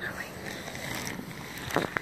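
Handling noise: a fluffy plush toy and fingers rubbing and rustling right against the phone's microphone, a steady rustle with a few small ticks. A short voiced 'ah' comes near the end.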